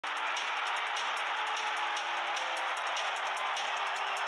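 Intro sound bed: a steady, even rushing noise like a stadium crowd, with a few low held tones under it.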